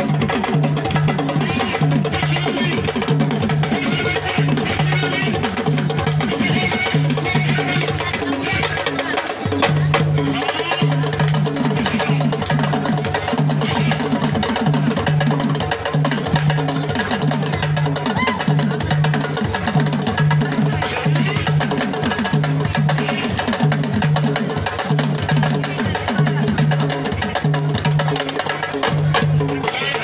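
Live hand drumming with a steady, repeating beat and a sharp, wood-block-like click on top, with the voices of a crowd mixed in.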